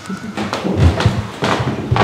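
Handling noise: a few soft thumps and rustles, as from a handheld microphone or the camera being moved about.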